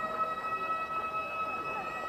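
Gagaku ceremonial music for a Shinto wedding procession: a high wind-instrument note held steady, with a few faint short sliding notes beneath it.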